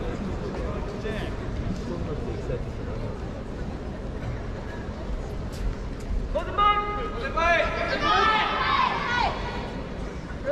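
Low murmur of a large indoor hall, then from about six and a half seconds loud shouted voices calling out across it for about three seconds.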